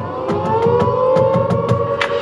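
Marching band music: a siren-like wail that rises in pitch and then holds, over quick, regular percussion ticks.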